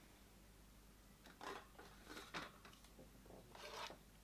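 Near silence with a few faint, short clicks and rustles of makeup products being handled, three times.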